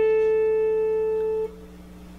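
Schecter C-1+ electric guitar holding a single note, the A at fret 10 on the B string, which rings on and slowly fades until it is cut off about one and a half seconds in.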